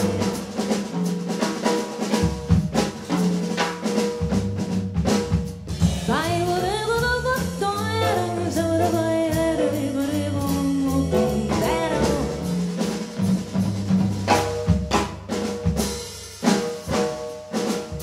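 Small jazz combo playing live: piano, a walking upright bass, and a drum kit with snare and rimshot strikes; a melody line rises and falls about six seconds in.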